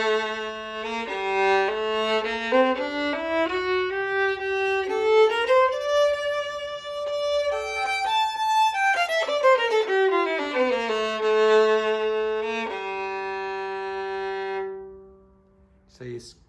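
Struna Concert 4/4 violin, with a Russian spruce top, played with the bow. It plays a melody that climbs from the low G string to a high note about eight seconds in, then comes back down. It ends on a long held note that dies away near the end. The tone is deep in the bottom, with lots of ring.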